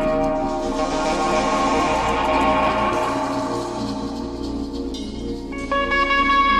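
Live blues band music: held instrumental notes that get quieter about four to five seconds in, then a new loud held note enters near the end.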